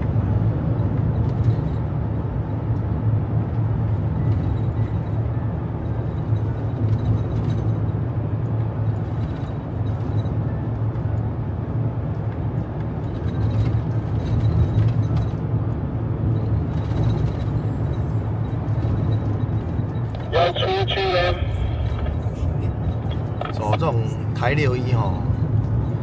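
Steady engine and road noise inside the cabin of a 22-year-old van driving on an expressway, a constant low drone under tyre noise. The owners find the cabin noise loud and the van's sound insulation poor.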